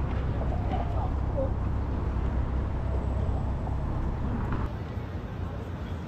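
City street ambience: a steady low rumble of traffic with faint voices of passers-by. The sound drops abruptly a little before the end to a slightly quieter outdoor background.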